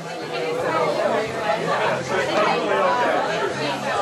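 Overlapping talk and laughter from several people in a busy bar, with no single clear voice.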